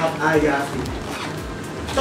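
A young male actor speaking a line of Thai stage dialogue in a reverberant studio, with a pause of about a second in the middle of the line.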